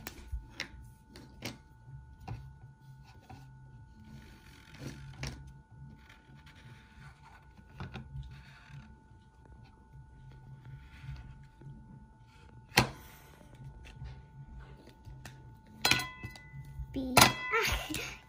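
Dry-erase marker writing on a glass plate: soft scratchy strokes, with small clicks and taps as markers and caps are handled and set down. A sharp click comes about two-thirds of the way through, and a few more close together near the end.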